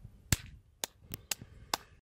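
Five sharp clicks, irregularly spaced, over quiet background.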